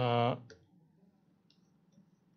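A man's voice briefly holds a single syllable at a steady pitch for about half a second, then the room goes quiet apart from a few faint clicks.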